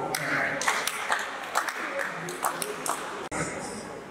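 An irregular run of short, sharp clicks and taps, with a quiet voice in between.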